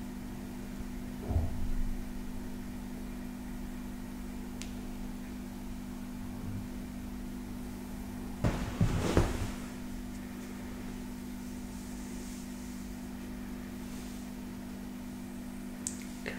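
A gua sha stone and fingertips glide over the bare skin of a back in a close-miked massage, faint over a steady low hum. Two brief, louder rubbing sounds come about a second and a half in and again around nine seconds in.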